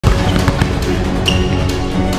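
A basketball bouncing on a hardwood court, a few sharp bounces in the first half second, with a short high squeak about a second in, all over background music with a steady beat.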